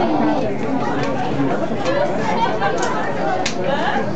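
Background chatter of many voices talking at once, with two brief sharp clicks near the end.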